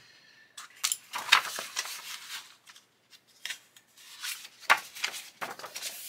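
Hands moving a plastic model kit and its clamps aside on a cutting mat and laying out a paper instruction booklet: irregular rustling and scraping with light knocks, the sharpest about a second in and again near five seconds.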